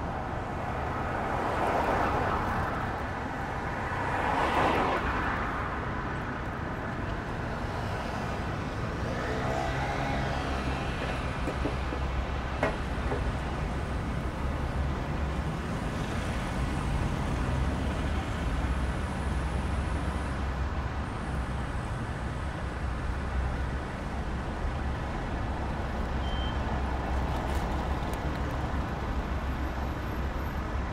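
Road traffic: two cars pass close by in the first few seconds, then a steady low rumble of traffic runs on.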